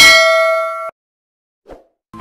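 A bell-ding sound effect from a subscribe-button animation, set off as the notification bell is clicked. It strikes once, rings brightly for almost a second while fading, and then cuts off abruptly. A faint short sound follows near the end.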